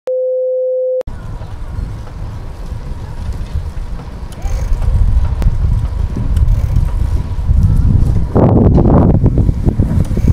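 A steady one-pitch test-card tone for about a second, cut off suddenly, then a continuous low rumble of wind buffeting an action camera's microphone, growing louder toward the end.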